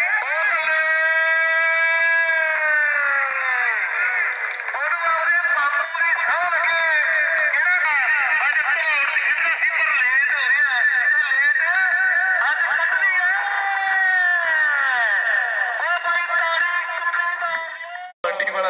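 Several voices shouting in long, high-pitched, drawn-out calls that rise and fall in pitch and overlap one another, like excited cheering and whooping at a cricket match.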